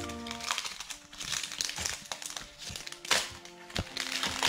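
Pokémon trading cards being handled and flipped through by hand, with crinkling rustles and two sharp clicks about three seconds in, over background music.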